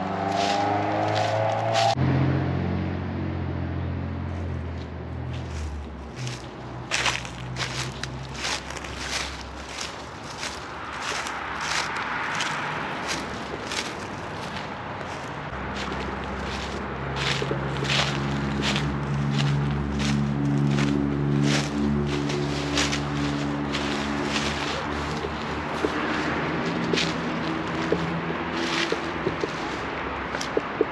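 Footsteps crunching through dry leaves and dead grass, a long run of crackling steps. Under them are low sustained tones that shift pitch every few seconds.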